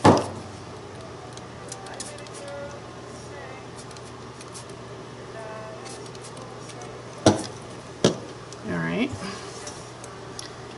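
Handling noise on a tabletop: a loud knock right at the start, then two sharp clicks or knocks less than a second apart near the end, over a low steady hum. A brief bit of voice follows them.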